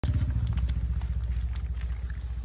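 An engine idling, with a steady, rapid low pulsing of about a dozen beats a second.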